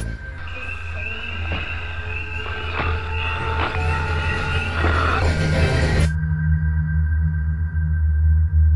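Dark ambient horror-film score: a deep, steady drone with a thin, wavering high tone above it and a few sharp knocks, slowly growing louder. The high tone and hiss drop out about six seconds in, leaving the drone and a low hum.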